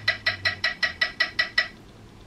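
Pro Metronome phone app clicking at 320 BPM from the phone's speaker, an incredibly fast run of even, unaccented clicks at about five a second. The clicks stop near the end.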